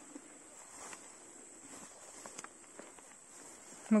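Faint, steady high-pitched chirring of grasshoppers, with a few soft rustles and steps through the ferns.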